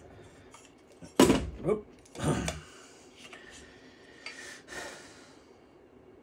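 Metal rack-ear brackets being handled: a sharp clack about a second in as they knock in the hands, followed by a short exclamation, 'Oop'. Faint rustling of the brackets being turned over comes later.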